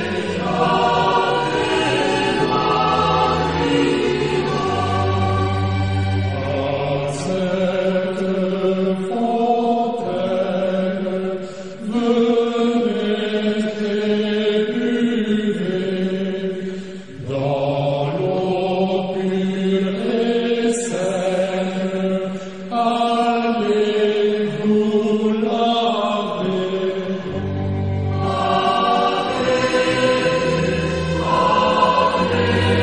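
Background music: a choir singing a slow chant in long held notes, phrase after phrase with brief pauses between.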